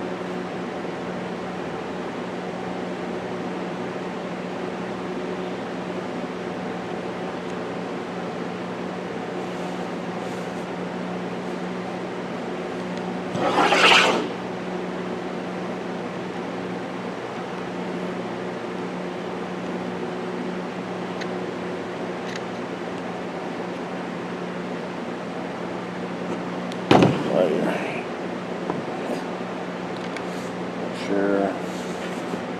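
Steady low machine hum, with a brief swishing rub about halfway through and a sharp click followed by a short rattle near the end: handling noise from an AR pistol and its arm brace as the brace is lined up on the buffer tube.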